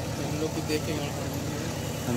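A steady low mechanical hum, like an idling engine, with a short spoken word at the start and soft talk over it.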